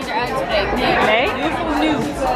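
Chatter: several people talking at once, voices overlapping in a busy room.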